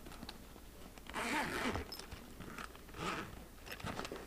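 Zipper on a child's fabric backpack being pulled open: a longer rasp about a second in and a shorter one around three seconds, with small clicks of handling between.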